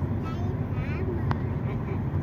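Car driving on a brick-paved road, heard from inside the cabin: a steady low engine and tyre rumble, with a single sharp click a little past the middle.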